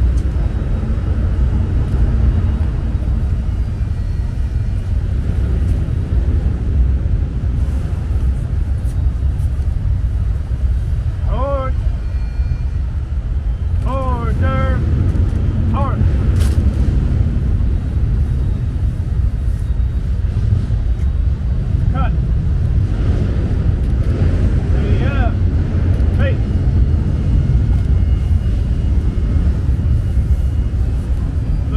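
Steady low rumble of an outdoor city background. A few short, distant voice-like calls come through around the middle and again later.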